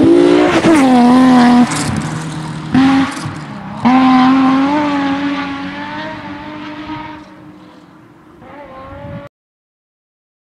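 Rally car engine at high revs as the car passes and pulls away, its note breaking off briefly twice (lifts or gear changes) and climbing again each time. The sound then fades into the distance and cuts off suddenly near the end.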